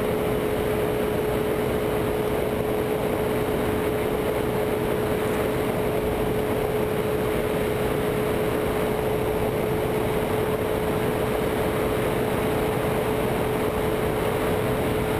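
Ultralight trike's Rotax 582 two-stroke engine running steadily in flight during the climb, one constant droning tone over an even rush of wind in the open cockpit.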